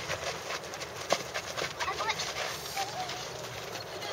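Footsteps of children running and scuffing on a hard dirt field, with a sharper thud of a football being kicked about a second in; children's voices faintly in the background.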